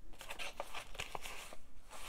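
Faint rustling of paper and card with a few light ticks, as a card is lifted out of a page pocket in a stuffed paper journal.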